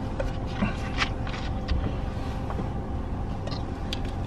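Steady low hum inside a car cabin, with a few faint short clicks and handling sounds as two people drink from plastic soda bottles.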